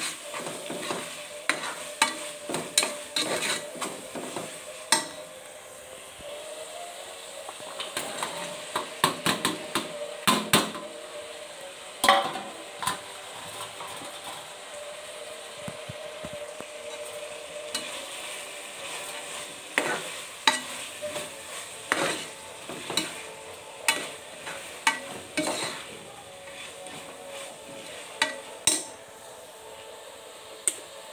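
A slotted metal spoon stirring and scraping chopped vegetables frying in a metal pressure-cooker pot. The spoon clinks and knocks against the pot again and again at an uneven pace, over a steady sizzle.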